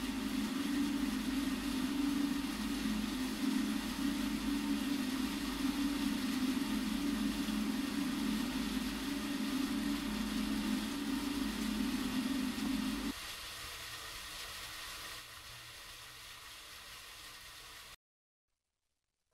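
Steady machine-like hum with a low drone over a hiss. The drone cuts off about thirteen seconds in, leaving a fainter hiss that steps down again a couple of seconds later.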